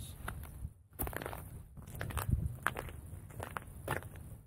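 Irregular footsteps crunching on snow-crusted lake ice.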